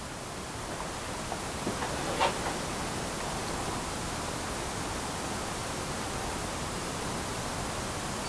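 Steady, even hiss of background room noise, with a faint tick about two seconds in.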